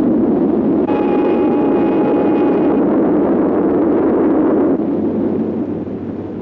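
Steam train running past with a loud rushing noise, and a steam whistle sounding steadily for about two seconds, starting about a second in. The rushing begins to fade near the end.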